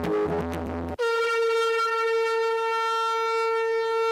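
Electronic music with a steady beat stops abruptly about a second in. A conch shell is then blown in one long, steady, unwavering note.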